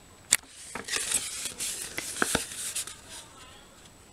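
Shiny plastic ration food pouch crinkling and rustling as it is handled close to the microphone, with a sharp click about a third of a second in.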